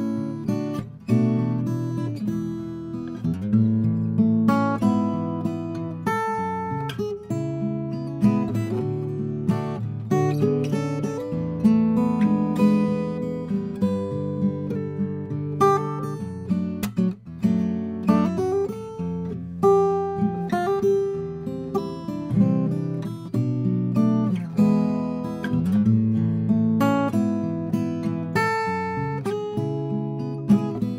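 Pono OM-10S acoustic guitar, with a spruce top, acacia back and sides and 80/20 bronze strings, played solo with the fingers. It plays an unbroken passage of picked chords and melody notes.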